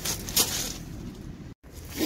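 Handling noise from the phone rubbing and brushing against a padded nylon jacket, with a sharp click about half a second in and a momentary dropout near the end.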